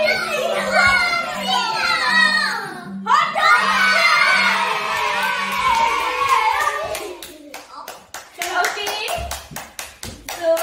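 Excited voices of a woman and children, rising into a long shout about three seconds in, over background music, then hands clapping in a quick run of claps near the end.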